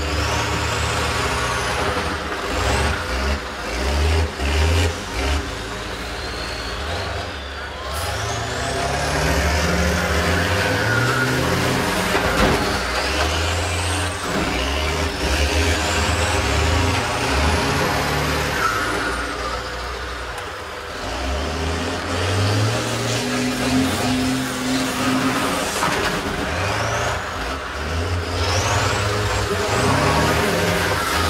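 School bus engines revving up and down as the buses drive and push against each other, with high whines that rise and fall with the revs. A few sharp knocks of impact come through, for example at about 8 and 12 seconds in.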